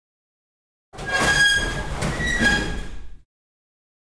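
Adhesive tape pulled off the roll with a squealing screech, in two stretches over about two seconds.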